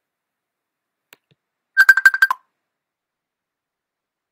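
Facebook Messenger video call ringtone: a quick run of about eight short, high beeps lasting about half a second, about two seconds in.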